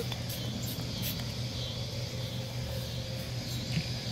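A pump-spray bottle of mirror cleaner misting onto a glass first-surface mirror, heard as two short faint hisses about a quarter second and a second in, over a steady low background rumble.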